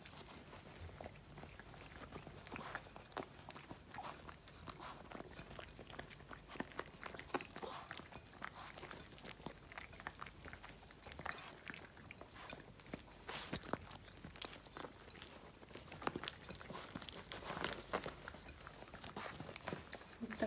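Faint, irregular wet clicks and smacks of Yorkshire terriers licking and chewing meat pâté.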